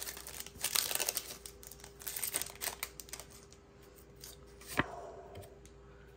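Foil booster pack wrapper being torn open and crinkled by hand, an irregular crackle that is densest in the first second and flares again twice later on.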